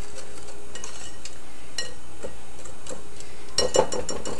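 Wire whisk stirring a dry flour mixture in a bowl, with a few light ticks of the wires against the bowl, then a quick run of taps near the end.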